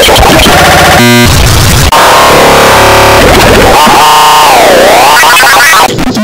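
Heavily distorted, clipped electronic music and sound effects turned into harsh noise at full loudness. About two-thirds of the way in, the pitch glides down and back up once.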